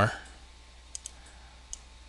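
Two faint, short clicks from the computer's controls while working in the program, one about a second in and one near the end, over low steady room hiss.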